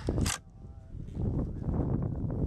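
Low rumble of wind and clothing rustling against the microphone, after a short sharp hiss near the start.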